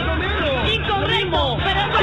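Speech only: a man and other voices talking over one another, with a steady background music bed underneath.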